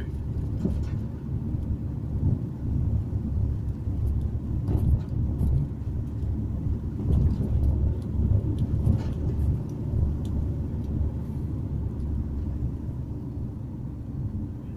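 Steady low rumble of a car's engine and tyres on asphalt, heard from inside the cabin while driving at a steady pace.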